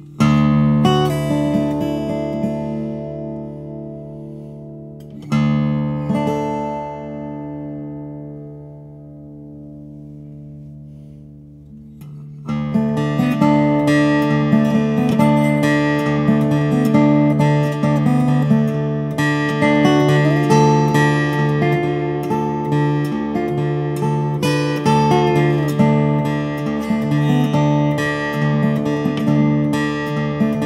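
2020 Casimi C2S steel-string acoustic guitar with African blackwood back and sides and a Moonspruce top, played with the fingers: a chord struck right at the start and another about five seconds in, each left to ring and fade, then from about twelve seconds a continuous fingerpicked passage.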